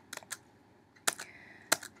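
A few sharp computer key clicks, about four spread over two seconds, with the second pair further apart than the first.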